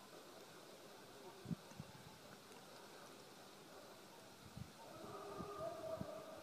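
Faint background hiss broken by a few short, dull low thumps, two close together about a second and a half in and another near the end, with a faint steady tone rising in at the very end.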